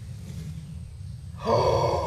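A man's sharp, excited gasp of surprise about one and a half seconds in, drawn out past the end, over a low rumble.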